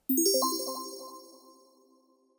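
Short chime sting for a section title: a quick run of rising bell-like notes with a bright shimmer on top, ringing out and fading away over about a second and a half.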